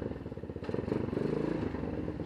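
Motorcycle engine running at low revs as the bike rolls slowly, a steady, even putter.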